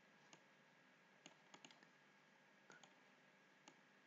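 Near silence with about eight faint computer-mouse clicks at irregular intervals.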